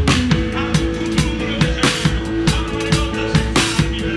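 Live rock band playing, with the drum kit heard up close: kick and snare keep a steady beat of about two to three hits a second under held chords from guitar and bass.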